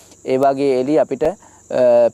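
A man talking in Sinhala, with a short pause a little past the middle. A steady high-pitched tone runs beneath the voice throughout.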